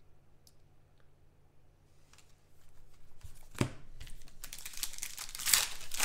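A foil trading-card pack being torn open, its wrapper crinkling loudly over the last second and a half. A single sharp click comes just before it.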